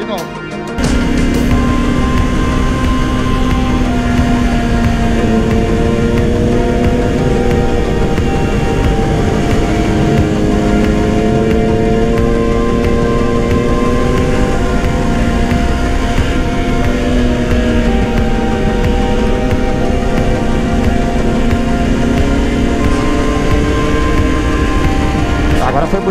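Yamaha R3 parallel-twin engine running at track speed, its pitch rising and falling slowly through the corners over a steady rush of wind. Background music with held notes plays over it.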